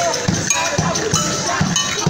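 Hand drums beaten in a steady street-march beat, about three or four strokes a second, with short ringing metal percussion strokes on top.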